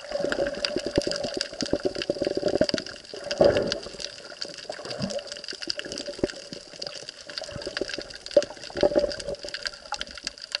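Underwater sound picked up by an action camera in its waterproof housing: water rushing and sloshing past the housing in uneven surges, with a steady crackle of small clicks throughout.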